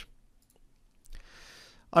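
A pause in speech: near silence with a faint click, then a short, soft intake of breath just before the male voice starts speaking again at the very end.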